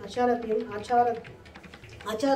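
A woman speaking in short phrases for about the first second, then a pause of about a second with only faint sound.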